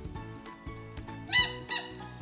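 Rubber duck squeezed twice, giving two short, high-pitched squeaks about a third of a second apart, about a second and a half in.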